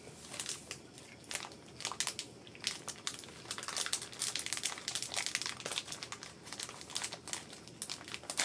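A snack cake's wrapper crinkling and crackling in the hands as it is worked open, a rapid, uneven run of small crackles that thickens after about a second; the packaging is tough to get open.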